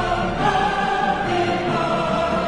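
Background music: a choir singing long held notes over instrumental accompaniment.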